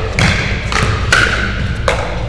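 Pickleball rally: sharp pops of paddles striking the plastic ball and the ball bouncing on the court, four in quick succession about half a second apart, over a steady low room hum.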